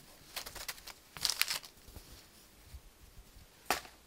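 Handling rustle of a cloth drawstring bag and a small plastic packet, in short irregular bursts, the loudest a sharp crinkle near the end.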